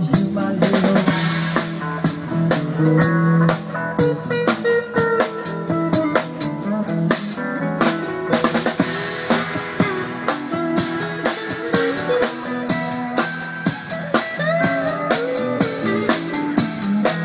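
Live band playing an instrumental groove: steel pan and keyboard melody over guitar and a drum kit keeping a steady beat.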